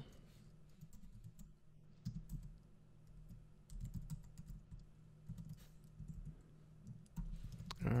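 Computer keyboard typing in a few short bursts of keystrokes with pauses between them.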